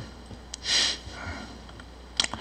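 A short sniff through the nose about half a second in, with a faint click just before it, over quiet room tone.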